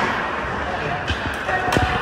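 Ice hockey play heard from the stands: a steady din of skates on ice and voices in the rink, with a few sharp knocks of stick and puck in the second half.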